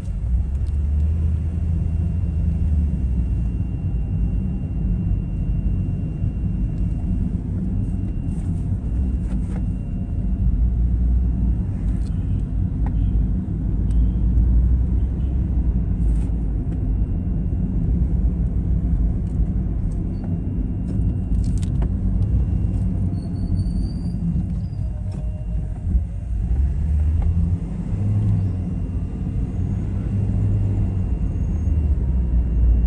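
A steady low rumble of cars moving slowly along a dirt road, with a few brief clicks.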